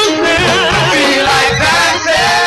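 Live gospel band music with a singer's voice wavering and sliding between long-held notes over the band.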